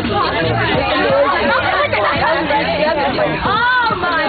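Many teenagers chattering and talking over one another inside a bus, a steady loud babble of voices. Near the end one voice glides up and then down in pitch above the rest.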